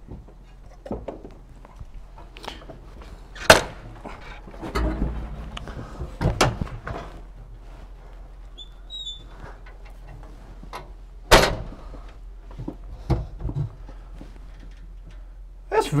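Scattered knocks and thuds of a man climbing down through the hatch of a TKS tankette, boots and body striking its riveted steel hull. The sharpest knock comes about three and a half seconds in, another near eleven seconds.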